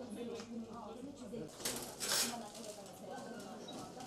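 Indistinct voices murmuring in a small room, no words clear, with a short burst of hissing noise about halfway through.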